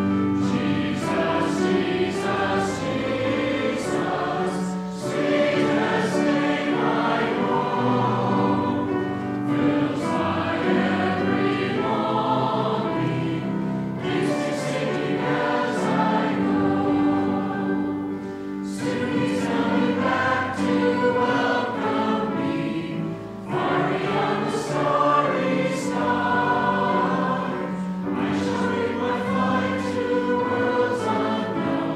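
Congregation singing a hymn together, held notes in phrases a few seconds long with short breaks between them.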